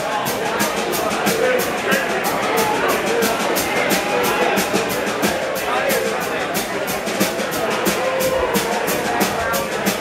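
Live country-rock band playing: electric guitar, acoustic guitar, electric bass and drum kit, with a steady cymbal beat of about three to four strokes a second.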